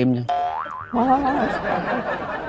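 A cartoon-style 'boing' comedy sound effect: a twangy tone that wobbles up and down in pitch for about half a second. About a second in, it gives way to a denser, busier jumble of sound.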